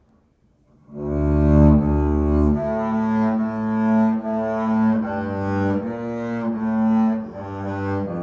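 Solo double bass played with a bow, coming in about a second in with a long low note and going on into a slow carol melody of sustained, legato notes.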